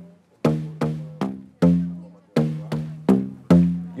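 Homemade tubaphone of plastic pipes, struck to play a short melody of low pitched notes. There are two phrases of four notes, each note sharply attacked and quickly fading.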